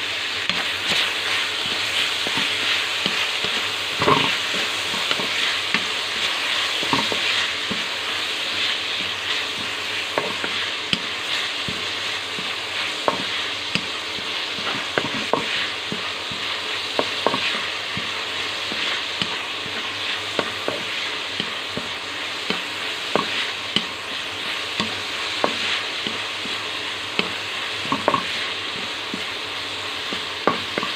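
Shredded cabbage, carrot and red bell pepper sautéing in a wide metal wok: a steady sizzle, with a wooden spatula scraping and knocking against the pan every second or two as the vegetables are stirred.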